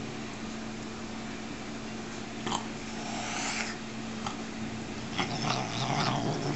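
A large house cat making breathy snorting huffs over a treat of deli ham: a short huff about two and a half seconds in, a longer one just after, and a cluster of huffs near the end.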